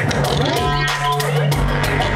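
Electronic dance music from a live laptop-and-mixer set, played loud through a club sound system. For about the first second and a half the deep bass drops out, leaving a held low note and a synth line that glides up and holds, then the full bass comes back in.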